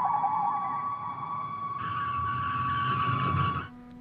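A steady, high electronic tone over a hiss of noise. The hiss grows louder about two seconds in, and both cut off sharply just before the end.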